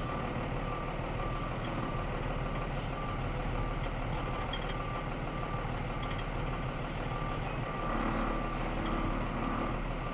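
Box truck's reversing alarm beeping at an even pace over the low, steady running of its engine as the truck backs slowly.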